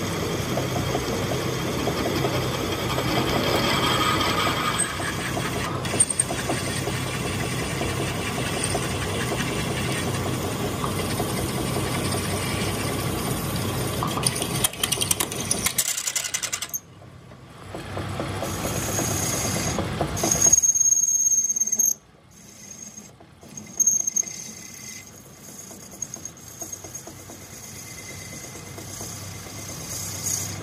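Metal lathe drilling into the end of a spinning metal shaft with a large twist drill: a steady grinding cut over a low motor hum. The sound dips briefly about 17 seconds in, and from about 21 seconds it is quieter, with a high, thin squeal of tool on metal.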